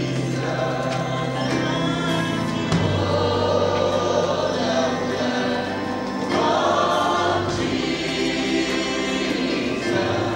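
Church choir singing a gospel song with a band behind it, over low held bass notes that change a few times.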